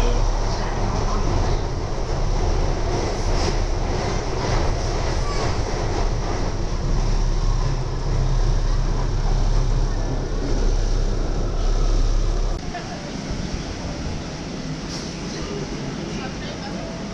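London Underground train running, heard from inside the carriage: a loud, steady low rumble with rattling and a few clacks. It drops off suddenly about twelve seconds in to a quieter, steadier background.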